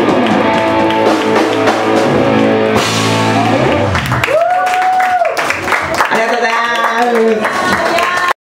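Live rock band of electric guitars, bass and drums playing loud and full, with a crash about three seconds in; the band then drops back to a long held, wavering note, followed by a few more short phrases.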